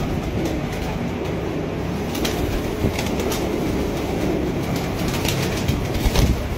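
Pigeons in a loft cooing over a steady, dense rumble of noise, with scattered sharp clicks that come more often near the end as the birds shift and flap.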